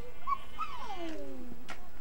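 An animal's call: a short note, then a long whine that falls steadily in pitch over about a second.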